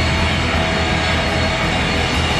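A rock band playing loud live: electric guitar, bass and a drum kit in a dense, continuous wall of sound.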